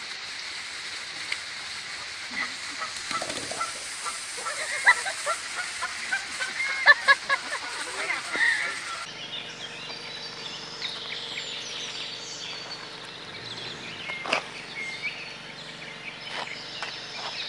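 Canada goose honking repeatedly, in short calls that are loudest between about five and eight seconds in. At about nine seconds the sound cuts to a quieter steady outdoor background with a few faint calls and one sharp knock.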